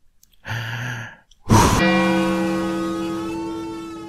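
A long voiced breath drawn in, then a sudden noisy burst of blowing about a second and a half in, followed by a sustained musical chord that rings on and slowly fades.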